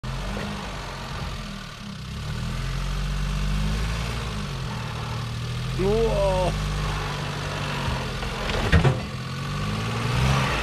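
Suzuki Jimny JA71's 550cc three-cylinder engine running at low revs while crawling over rocks, its pitch rising and falling a little. A few sharp knocks a little under nine seconds in.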